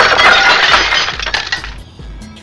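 Glass-shattering sound effect: a sudden loud crash of breaking glass that fades out over about a second and a half.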